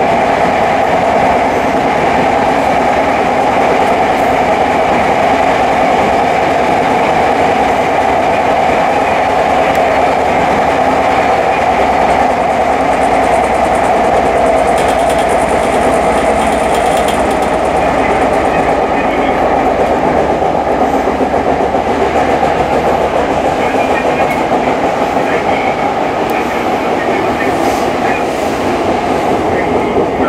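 Tokyo Metro 05 series electric train running on the line, heard from inside the driver's cab: a steady rolling and running noise with some clickety-clack of the wheels. It eases a little near the end as the train slows into a station.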